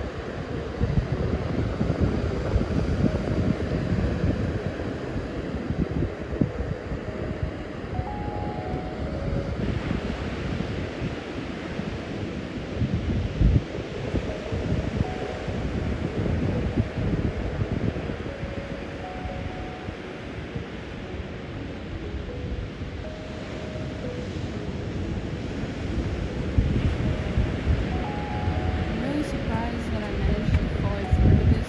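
Ocean surf washing onto a beach, with wind buffeting the microphone in low gusts.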